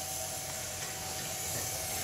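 Faint steady sizzling hiss of chicken burger patties shallow-frying slowly in oil.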